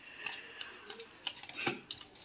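A folded paper slip being unfolded by hand: faint, scattered crinkles and clicks of the paper.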